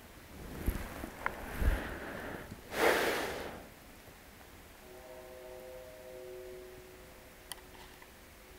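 Rustling and small knocks of handling by a crouching angler, with a louder swish about three seconds in. Later a faint steady tone with several pitches sounds for about two seconds.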